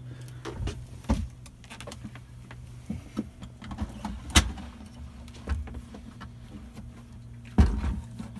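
Plastic clicks and knocks as a cassette toilet's waste tank is unlatched and slid out of its housing, with a sharp click about four seconds in and a heavier knock near the end.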